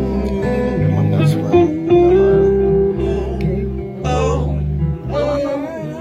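A live band playing, with guitars to the fore over a bass line, and the music dipping briefly near the end.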